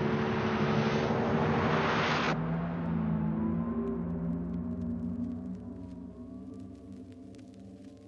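Ambient electronic music: held, droning synth tones under a loud wash of noise that cuts off suddenly about two seconds in. The drone then fades away slowly, with faint scattered clicks near the end.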